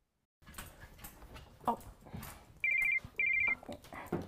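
A telephone ringing: two short, trilled rings close together, partway through.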